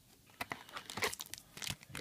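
Foil booster pack wrapper crinkling and tearing as it is handled and opened. It is a run of sharp, irregular crackles starting about half a second in.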